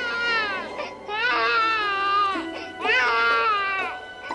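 A newborn baby crying in three wails, each about a second long, rising and then falling in pitch, over soft background music.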